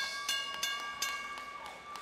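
A single bell-like musical hit that rings out and fades over about two seconds, with scattered claps from the arena crowd.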